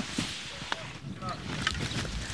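Outdoor wind noise on the microphone, with faint distant voices and a few small clicks underneath.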